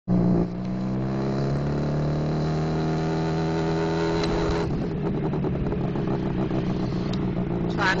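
Motorcycle engine heard from the passenger seat while riding, its note rising slightly in pitch as the bike pulls along in gear. About halfway through the steady note gives way to a rougher, choppier running.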